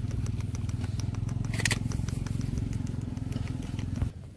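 A motor engine running steadily with a low pulsing rumble, with scattered light clicks and one short high hiss about 1.7 seconds in; the rumble cuts off suddenly at the end.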